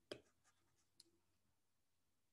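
Near silence with a few faint clicks of a stylus on a tablet screen: a soft tap just at the start, and a sharper click about a second in.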